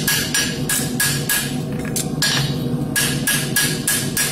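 Farrier's hammer striking a steel Kerckhaert Comfort Sport horseshoe on an anvil, about four quick strikes a second with a short pause just past the middle. The flat of the hammer is working the shoe's inside edge to build in extra sole relief.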